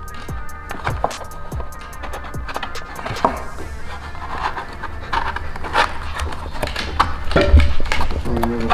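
Background music over a run of irregular clicks and creaks from a sheet of aluminium composite panel being bent over wooden boards, with a louder thump near the end.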